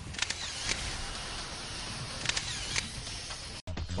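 A handful of sharp clicks over a steady hiss, spaced unevenly across the stretch.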